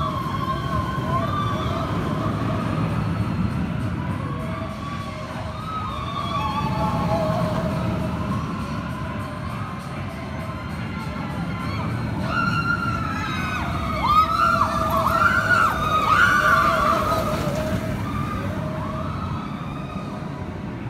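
Roller coaster riders screaming, several long wavering screams at once that rise and fall in pitch, loudest about 14 to 17 seconds in, over the low rumble of a suspended looping coaster's train running on the track.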